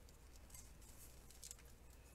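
Near silence with a few faint, brief rustles of a glittered organdy ribbon being tied into a knot.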